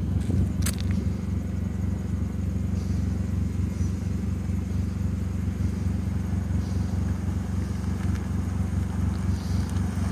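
Car engine idling steadily, heard from inside the cabin as a low, even hum, with one sharp click a little under a second in.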